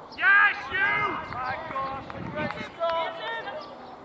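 Cricket players shouting across the field: one loud call about a quarter of a second in, then several shorter calls.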